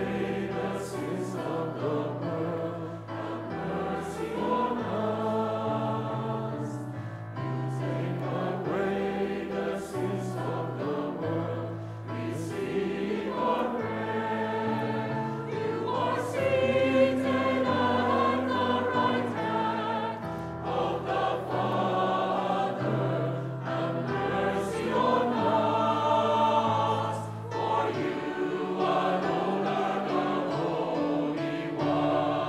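Mixed church choir singing a hymn over a low instrumental accompaniment whose bass notes are held and change every second or two.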